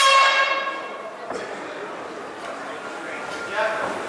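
A ring bell struck once to open an MMA round, ringing out and fading over about a second and a half, followed by the steady hum of the hall. A man's voice is heard briefly near the end.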